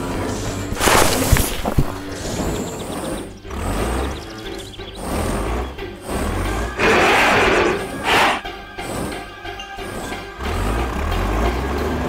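Cartoon digging sound effects over background music: an animated excavator bucket scooping and dumping earth, with a crash about a second in, low engine rumbles, and a loud burst of scattering dirt near the middle.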